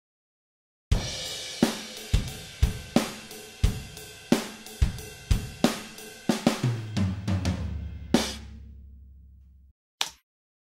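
A recorded MIDI drum part played back through EZdrummer's sampled acoustic drum kit, starting about a second in: a steady cymbal pattern with kick and snare hits. Near the end comes a tom fill stepping down in pitch, then a final crash that rings out.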